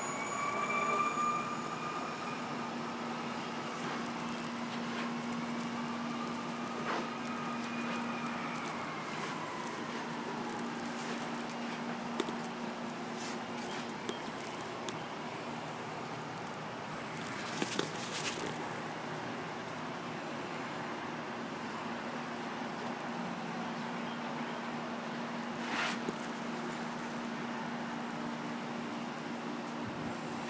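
Outdoor ambience with a distant siren wailing, its pitch rising and falling slowly through the first ten seconds or so, over a steady low hum. A few short knocks sound in the second half.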